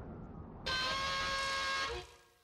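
A steady, unwavering horn-like tone sounds for about a second, starting a little way in and cutting off just before the end.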